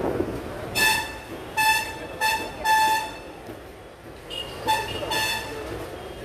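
Vehicle horn honking in short toots: four in quick succession, the last held longest, then two more near the end.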